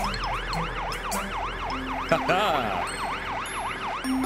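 Cartoon fire engine siren, a fast yelp rising and falling about three times a second.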